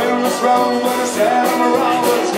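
Live acoustic guitar being strummed steadily while a man sings a folk song.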